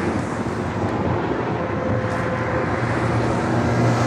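Distant helicopter flying over the sea: a steady low drone that grows louder near the end, mixed with wind noise on the microphone.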